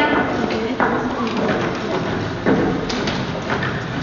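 Footsteps thumping on a stage floor as actors walk off, a few separate knocks over children's voices in a large hall.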